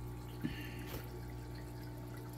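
An aquarium sponge filter bubbling, with air bubbles trickling up its lift tube and breaking at the water surface with small drips, over a steady low hum. There are a couple of faint clicks about half a second and a second in.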